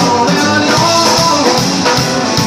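A live rock band playing an instrumental passage: electric guitar over a drum kit, with drum hits at a steady beat and no singing.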